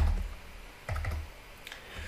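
Computer keyboard keystrokes: a sharp key press, likely the Enter key, right at the start, another press with a low thud on the desk about a second in, and a couple of faint key taps near the end.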